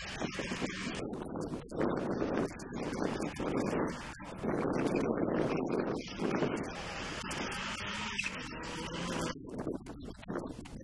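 Mitsubishi Lancer Evolution rally car engine heard from a distance on a gravel stage, rising and falling as the car drives and slides through the corner. It is loudest about halfway through.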